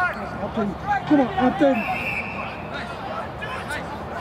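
Men's voices shouting and calling out during a rugby match, loudest in the first two seconds, with a short, steady high tone about two seconds in.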